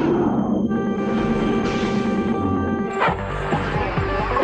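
Electronic background music with held chords. A sudden hit comes about three seconds in, after which the music changes to a busier pattern with more bass.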